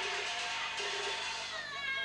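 Teochew opera music: a high, sustained melody line, held steady and then sliding down in pitch near the end.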